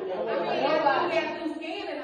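People in the class talking over one another, a general chatter of voices in a large room.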